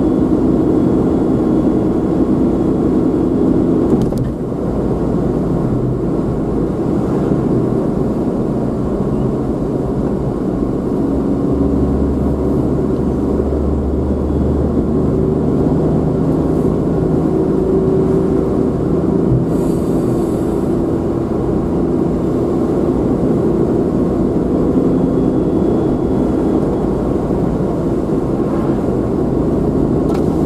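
A vehicle's engine and road noise heard while driving at steady speed. The level dips briefly about four seconds in as the engine note changes, and a short hiss comes about twenty seconds in.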